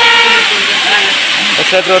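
A man talking over the steady hiss of a waterfall.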